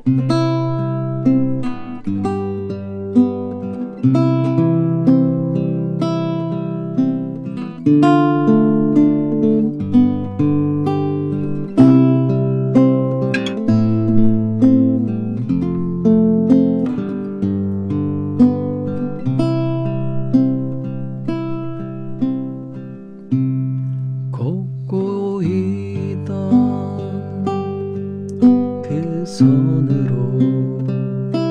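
Nylon-string classical guitar (Antonio Lorca 1015) played fingerstyle. It plays a steady picked accompaniment, with the bass note changing every second or two under the higher notes.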